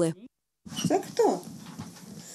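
Two short vocal sounds with a falling pitch, about a second in, over faint room noise after a brief cut to silence.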